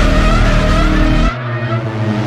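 Loud, dense sound effect at the close of the hip-hop track, with a slowly rising whine over heavy bass; the bass shifts lower and thins about a second in.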